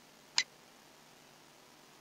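A single sharp computer mouse click about half a second in, over faint steady hiss.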